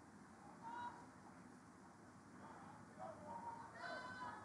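Faint, distant, high-pitched shouts from players calling out across the field, once near the start and again in a longer run near the end, over quiet outdoor ambience.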